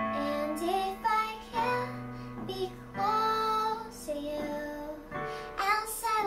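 A girl singing a slow, gliding ballad melody over chords held on an electronic keyboard.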